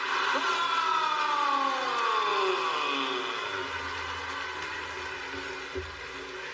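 A long siren-like tone with several parallel pitches, falling steadily over about three seconds, over a steady wash of noise.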